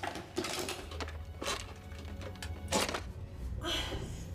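Low, steady droning film-score music, with a few short, sharp scraping and knocking noises of handwork at a wall; the sharpest comes near three seconds in.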